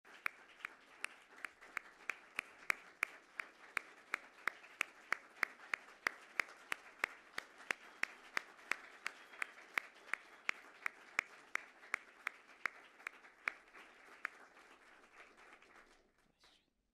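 Audience applauding, with one clapper close by clapping steadily, nearly three claps a second. The close claps stop about two seconds before the end and the applause dies away.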